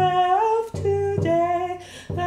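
A woman singing a slow hymn melody of held notes that step up and down, with a quieter low accompaniment under some of them.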